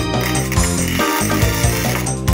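Wire-feed (MIG) welding arc crackling steadily for nearly two seconds while tack-welding steel square tubing, heard over background music with a steady beat.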